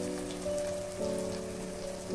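Background music of held notes that shift about every half second, over a faint, steady crackle of food frying in oil in a kadai.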